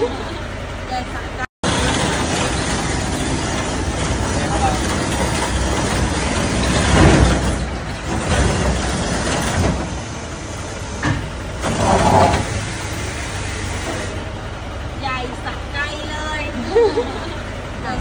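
Steady mechanical running noise from an enclosed car-transporter truck, with people talking over it and louder swells about a third and two thirds of the way through.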